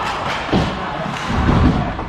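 Ice hockey players and the puck hitting the rink boards and glass: a sharp knock about half a second in, then heavier thumping around a second and a half in, over arena crowd noise.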